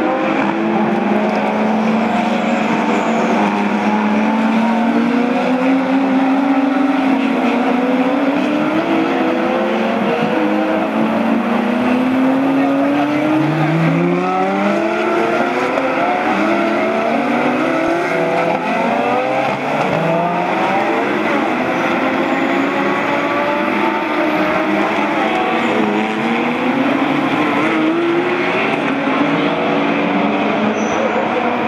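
Several GT race car engines accelerating out of corners, each pitch climbing through the gears and dropping at every upshift, with many cars overlapping as the pack goes by.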